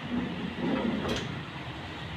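Wardrobe drawers sliding on their runners, with one short knock about a second in.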